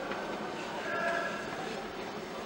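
Steady background noise with faint, indistinct voices.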